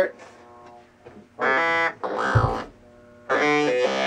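Keyboard synthesizer played through a talkbox: three short sustained notes shaped into vowel-like 'talking' sounds, the first about a second and a half in and the last running to the end. A low thump sits under the middle note.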